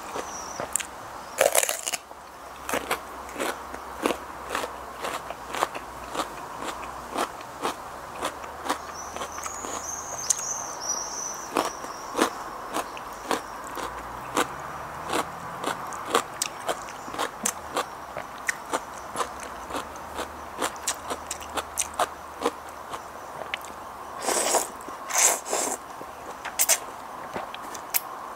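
Close-up eating sounds: biting into a whole raw radish and chewing crisp fresh vegetables, with rapid crunches all the way through and a few louder crunches near the end.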